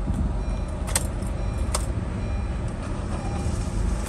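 The Honda City's 1.5-litre engine idling steadily, heard as a low hum from inside the cabin. Two sharp clicks sound about one and almost two seconds in.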